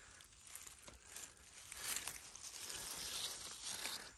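Faint rustling and crackling of dry grass and fallen leaves as a hand moves through them, a little louder in the second half.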